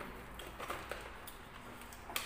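A few faint light clicks over quiet room tone, from food being handled at a table with a paper chicken bucket and a small paper cup.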